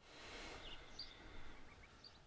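Faint ambient hiss with a few brief, faint high chirps, like distant birds.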